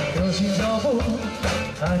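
Live band playing amplified through a stage PA, with a man singing over drums and guitars.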